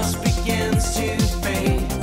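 Live electronic synthpop with a pitched-down electronic kick drum on every beat, about two a second, under sustained synthesizer chords, with sung vocals over it.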